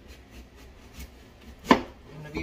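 A kitchen knife cutting rind off a whole watermelon on a plastic cutting board: a few light cutting clicks, then one sharp knock near the end, the loudest sound.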